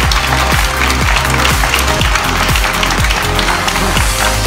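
Electronic dance music with a steady kick-drum beat about twice a second.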